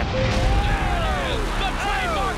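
Fight crowd cheering and shouting, many voices at once, over a low rumble.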